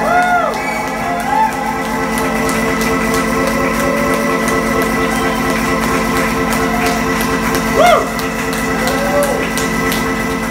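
Live electronic music: a sustained synthesizer chord held steady, with a few short voice-like sounds that sweep up and down over it, the loudest near the end.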